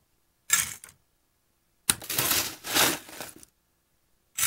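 Ice scooped and poured into stemmed glass cocktail glasses, clattering in two bursts: a short one about half a second in, and a longer one starting with a sharp click about two seconds in.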